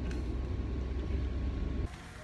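Steady low rumble of a car in motion, heard from inside the cabin. It cuts off suddenly near the end.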